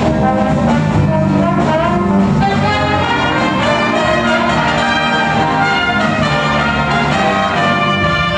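Jazz big band playing live, a loud brass-led passage with trumpets, trombones and saxophones over rhythm section.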